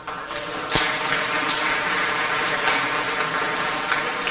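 Audience clapping, growing sharply louder under a second in, then keeping up a steady crackle.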